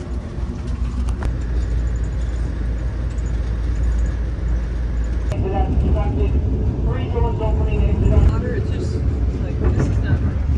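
Amtrak passenger train heard from inside the coach, a loud steady low rumble as it crosses a steel bridge, with a couple of sharp clicks about a second in. A person's voice talks over the rumble through the second half.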